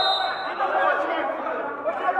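Many overlapping voices of players and onlookers calling out in a large hall, with a referee's whistle blast that ends just after the start.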